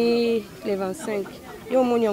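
Speech only: a woman talking, with a short pause about halfway, and chatter of people around.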